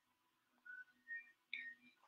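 Near silence: room tone, with three faint, short high-pitched chirps in the second half.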